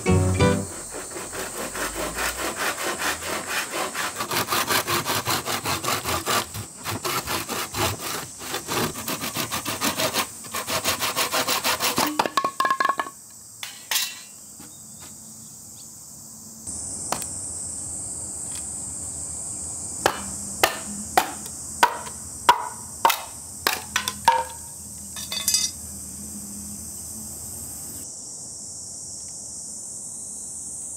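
Hand saw cutting through a green bamboo culm, quick back-and-forth strokes for about the first thirteen seconds. Later, about eight sharp knocks in quick succession as the bamboo sections are split lengthwise. Insects buzz steadily at a high pitch throughout.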